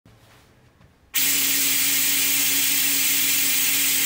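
Compressed air hissing through a small 3D-printed turbo, its turbine running at a steady speed with a steady hum under the hiss. It starts abruptly about a second in.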